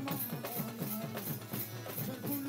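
Live Bengali devotional sama music: hand-played dhol drums beating a fast rhythm over a harmonium, with the drum strokes bending in pitch. A high jingling accent lands about four times a second.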